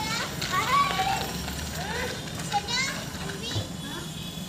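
Young children's high-pitched voices calling out and chattering in short phrases.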